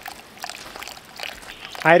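Water pouring out of a hydraulic ram pump's pressure tank as its pressure is relieved and the tank drains, with the pump's drive pipe shut off.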